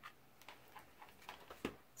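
A handful of faint, scattered clicks from a hot glue gun and paper flower leaves being handled while a leaf is glued down, the clearest click a little before the end.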